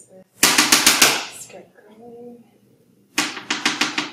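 Metal palette knife tapping rapidly against the paint palette on the work table while mixing oil and cold-wax paint: two quick runs of about six sharp taps each, one about half a second in and one near the end.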